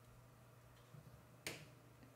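Near silence: room tone with a faint steady hum, broken by one short sharp click about one and a half seconds in.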